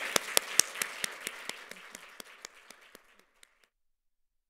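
Audience applauding, with a few sharp individual claps standing out. It dies away and then cuts off abruptly about three and a half seconds in.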